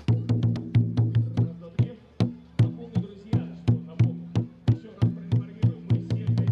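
A large studded barrel drum, the kind that sets the stroke rate for a dragon-boat crew, beaten by hand in a brisk rhythm of about four strokes a second. Each stroke rings with a low booming tone.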